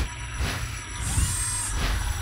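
Sound effects for an animated logo: sharp clicking hits at the start and about half a second in, a bright high shimmer from about a second in, and another hit near the end, over a low rumble.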